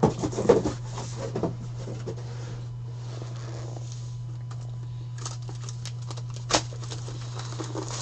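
A sealed cardboard trading-card box being handled on a table: a cluster of taps and scuffs in the first second and a half, then scattered clicks with one sharp knock about six and a half seconds in, and plastic shrink wrap crinkling near the end. A steady low hum runs underneath.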